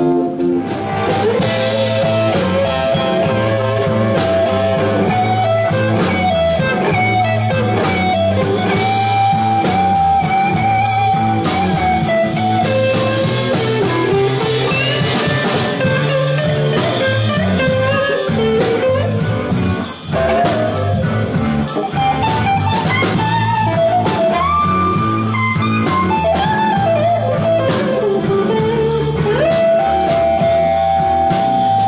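Live blues band playing: an electric guitar solo with bent, sliding notes over drum kit and a steady bass line.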